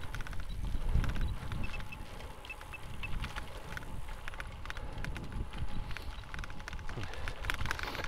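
Wind buffeting the microphone of a cyclist riding in strong wind, a fluctuating low rumble, with many small clicks and rattles from the bicycle on a dirt path.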